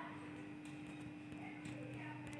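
Quiet room tone: a steady low electrical hum with a few faint ticks.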